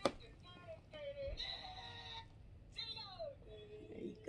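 Faint voices and music in the background, with pitches that slide and fall, after a sharp click at the start.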